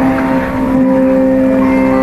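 Electric mandolins playing a Carnatic kriti, holding one long sustained note over a steady drone.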